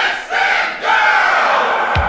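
A crowd-like shout of many voices, held through the break in a retro dance track after its drum beat drops out.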